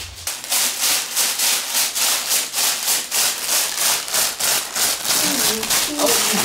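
A paper sheet being crinkled and scrunched by a baby's hands, a rapid rustle repeating about three or four times a second.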